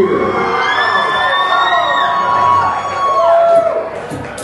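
Electronic synthesizer tones from the DJ's programming rig: several held high pitches that slide downward in steps, about two and three seconds in.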